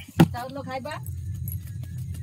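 A sharp thump about a fifth of a second in, the loudest sound, followed by a short stretch of talking and then a few faint clicks, over a steady low hum.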